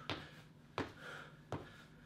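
Footfalls of trainers on a rubber gym floor during quick marching high knees: three soft thuds about three-quarters of a second apart.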